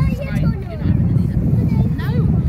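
Wind buffeting the microphone: a loud, gusting low rumble that runs under faint voices.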